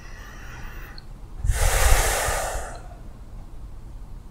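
One loud, deep human breath, starting suddenly about a second and a half in and fading away over about a second and a half.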